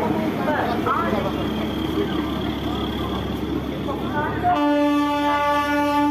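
A train horn sounding one long, steady blast starting about four and a half seconds in, over people talking on the platform.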